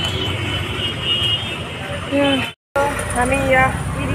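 Road traffic noise with a steady low rumble. About two-thirds of the way in the sound drops out for a moment, then a woman talks over the noise of the vehicle she is riding in.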